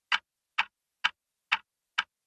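A clock-style ticking sound effect in a break in the music track: sharp, evenly spaced ticks about two a second, with silence between them.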